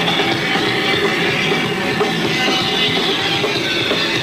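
Live hardcore punk band playing loud and steady: distorted guitar and drums in a concert hall recording.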